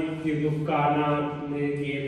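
A Buddhist monk's male voice chanting Pali through a microphone, drawn out in two long, held notes, the second starting under a second in.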